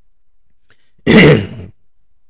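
A man clearing his throat once, close to the microphone: one short, loud burst about a second in.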